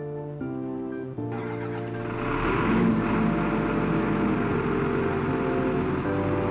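Background music, with a rushing mechanical sound swelling in under it about a second and a half in and holding on: the rig's 290 kW diesel deck engine being started by its key and running.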